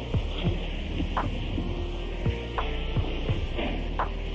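Steady electrical hum and hiss of an old lecture recording before the speaking begins, with short ticks every half second or so.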